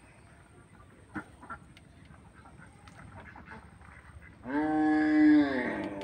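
A single long pitched animal call begins about four and a half seconds in, holds steady for over a second, then drops and trails off. Two faint clicks come a little after a second in.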